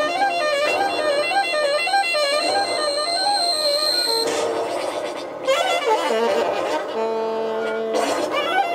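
Live free-improvised jazz from saxophones, double bass and electronics. For the first half a pitched line wavers up and down in a repeating figure under a steady high tone; the high tone cuts off about halfway, giving way to a busier passage and then held notes near the end.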